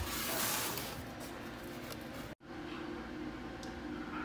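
Cardboard box and packaging rustling and scraping as an air fryer is unpacked by hand, cut off abruptly a little over two seconds in. A quieter steady hum follows.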